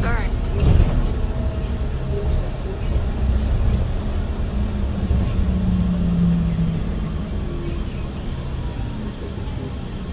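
Low, steady engine and road rumble heard from inside a moving city bus, with a deeper hum held for a couple of seconds in the middle. Brief passenger voices come in near the start.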